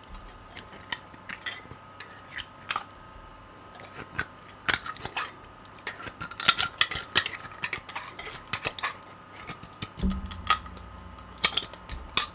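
Metal table knife scraping and clicking inside a beef bone as the marrow is dug out: a run of sharp, irregular scrapes, thickest about halfway through. A dull low thud comes about ten seconds in.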